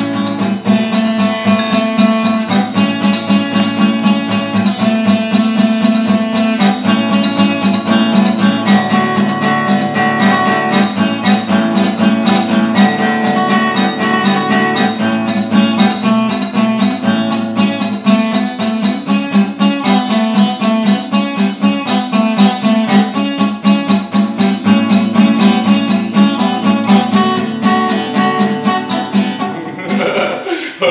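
Steel-string acoustic guitar strummed in a fast, even rhythm, playing a repeating chord riff.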